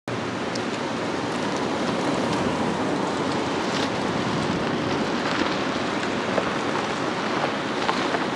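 Steady outdoor street noise: an even hiss of road traffic, with a few faint clicks.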